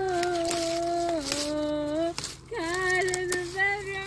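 A woman's voice singing a slow tune without words, in long held notes that step up and down in pitch, over a faint steady low hum.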